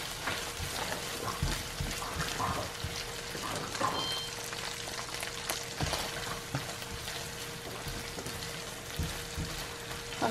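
Chorizo and onion frying in a nonstick pan, sizzling steadily, while a spatula stirs and scrapes through the meat.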